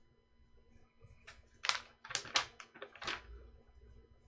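Pencil sketching on animation paper: about seven quick, scratchy strokes in a burst through the middle, as an outline is drawn.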